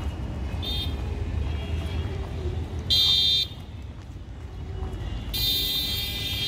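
High-pitched vehicle horn blasts from street traffic: a brief one under a second in, a louder half-second blast about three seconds in, and a long one starting near the end. A low steady rumble runs underneath.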